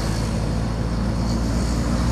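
Steady engine hum and road noise of a moving vehicle, heard from inside its cabin.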